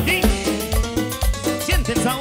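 Live tropical dance band playing on a steady beat: electric bass and kick drum pulse below keyboard and timbales, with a few short gliding high notes.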